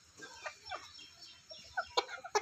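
Several chickens clucking: a string of short, separate clucks.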